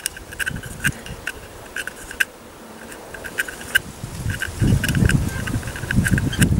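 Small, sharp metallic clicks at an uneven pace, several a second, as a needle is pushed into the jet holes of a brass Trangia spirit burner to clear blockages. A low rumble comes in near the end.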